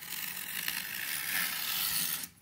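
Utility knife blade drawn along a wooden straightedge, slicing through gold reflective heat-wrap tape and its paper backing into the cardboard beneath: one continuous scratchy hiss that grows slowly louder.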